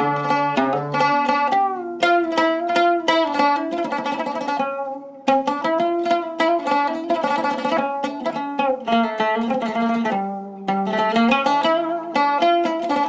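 Oud played solo with a plectrum: a steady run of plucked notes, with a brief pause about five seconds in.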